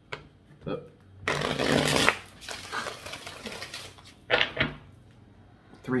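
A deck of tarot cards being shuffled by hand: a dense rush of cards about a second in, lasting under a second, followed by fainter rustling.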